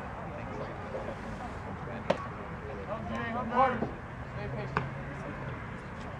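A pitched baseball smacking into the catcher's mitt with one sharp pop about two seconds in. A short shouted call follows a second later, and there is a fainter click near five seconds, over steady open-air background noise.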